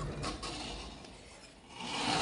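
Knitted cloth rubbing and scraping against the phone's microphone as it is carried, a rustling handling noise that grows quieter toward the end.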